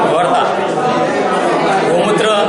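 Speech only: a man talking, with other voices chattering behind him.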